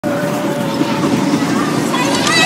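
Steady rumbling noise with a faint steady hum underneath, from a ride vehicle in motion.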